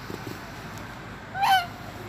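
A white domestic goose honks once, short and loud, about one and a half seconds in.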